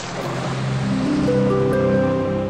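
Logo sound effect: the rushing wash of a splash into water dies away while a chord of held musical notes builds up, one note entering after another from about half a second in.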